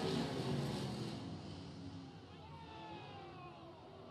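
A field of limited late model dirt-track race cars running at full throttle just after the green flag. The V8 engine noise fades over the first two seconds as the pack pulls away into the turn and then stays faint.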